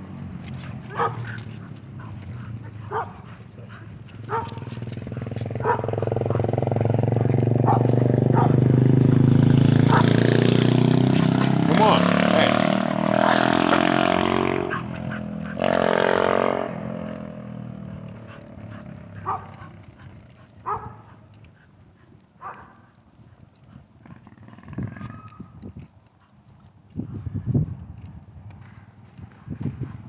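A motor vehicle's engine swells up and passes, loudest about halfway through, its note rising in pitch before it fades away about sixteen seconds in. Short sharp ticks come before it and scattered soft knocks after.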